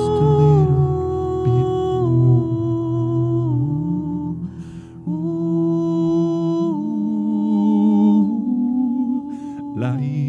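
Wordless humming in a live song: long held notes that step to a new pitch every second or two, over a low sustained accompaniment, with a short quieter dip about halfway through.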